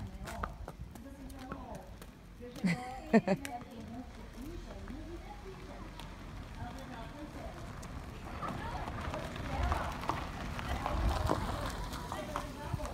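Indistinct voices with one brief loud vocal outburst about three seconds in, over footsteps and a pony's hooves walking on gravel and dirt.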